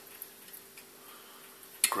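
Light metallic ticks from the wire grill of an electric boiling ring being handled, over a faint steady hum, with a sharper click near the end.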